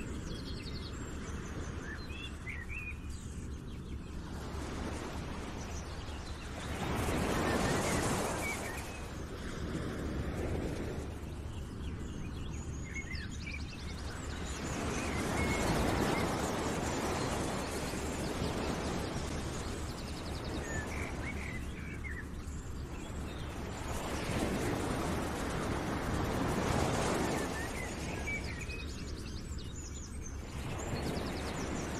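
Outdoor nature ambience: a steady rushing noise that swells and fades three times, with scattered small bird chirps.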